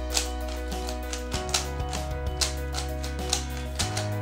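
Background music: sustained chords over a bass line that shifts note twice, with a regular beat of sharp percussive hits.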